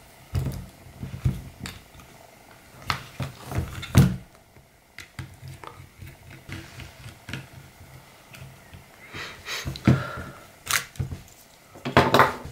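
Scattered clicks, taps and knocks of a small screwdriver and handling of a plastic airsoft pistol frame as its screws are undone, the loudest knock about four seconds in and a cluster near the end, over a faint low hum.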